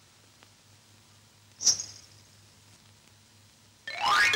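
Old film soundtrack with a low steady hum, broken by one sharp high-pitched ping about a second and a half in. Just before the end a rising musical glide begins.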